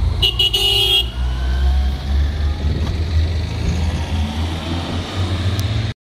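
Vehicle horn giving two short toots and a longer one in the first second, over a steady low rumble of engines pulling away.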